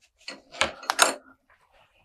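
A few sharp clicks and light knocks as fly-tying materials are handled on a rubber bench mat, with a card of chenille being picked up. They come in the first second and a half, then it goes quiet.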